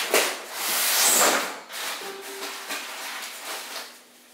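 Rustling and rubbing handling noise with a few small knocks, loudest in the first second and a half and fading toward the end, as things are rummaged through off camera.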